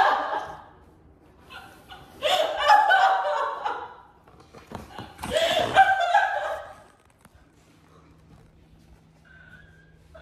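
People laughing hard in three bursts over the first seven seconds, then a quieter stretch with only a faint steady low hum.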